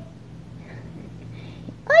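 A very young kitten mewing faintly, a couple of thin high calls while it is held in a hand.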